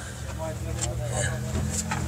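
A vehicle engine idling with a steady low hum, with faint voices in the background.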